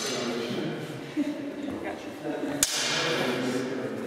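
Steel practice longswords striking blade on blade: a sharp clash right at the start and a louder one about two and a half seconds in that rings and fades over about a second. Voices and a short laugh underneath.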